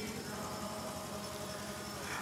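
A pause with no singing: only a low, steady background hum.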